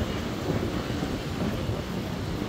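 Wind rumbling on the camera microphone, a steady low buffeting over the background noise of a busy pedestrian street.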